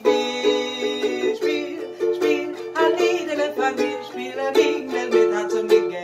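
Ukulele strummed in a steady rhythm, with a woman singing along.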